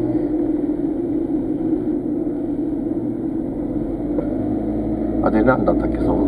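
Steady engine and road noise heard inside a moving car's cabin, a low even hum and rumble. A voice starts talking near the end.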